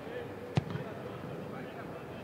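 A single sharp thump of a football being struck, about half a second in, over the open ambience of a large stadium with players' voices calling in the background.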